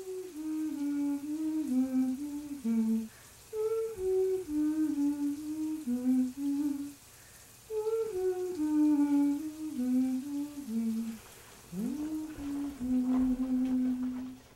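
A voice humming a slow, gentle tune in four phrases of stepped notes, the last one opening with a quick upward scoop and ending on a long held note.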